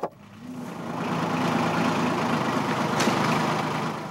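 Farm tractor engine running steadily, growing louder over the first second and easing off slightly near the end.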